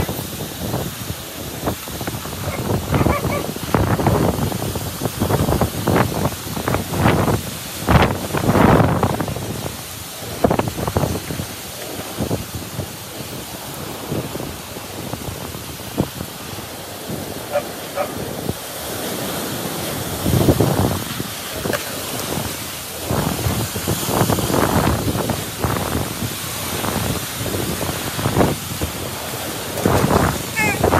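Typhoon wind gusting hard, in irregular surges that rise and fall every second or two, with wind striking the phone's microphone.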